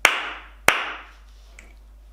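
Two hand claps, the second about three-quarters of a second after the first, each with a short room echo: the two syllables of "pencil" clapped out.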